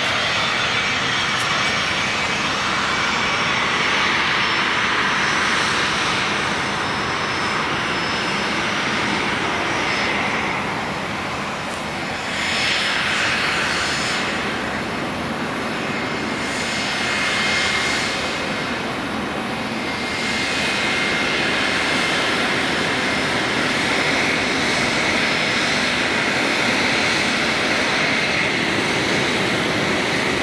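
The twin Williams FJ44 turbofans of a Cessna 525 CitationJet 1 at taxi power: a steady jet whine with a high tone over a rushing hiss. The sound sweeps and shifts in tone several times in the middle stretch as the jet taxis past and turns.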